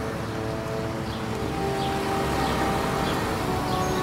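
Steady outdoor background noise with faint sustained musical tones fading in about a second and a half in.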